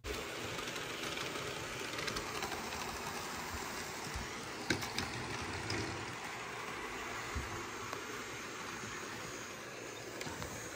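Toy and model trains running: a steady mechanical rumble of small motors and wheels, with a few faint clicks around the middle.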